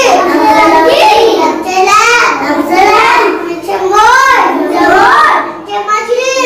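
Children reciting their reading lesson aloud in a chanting, sing-song voice, the pitch rising and falling in repeated phrases.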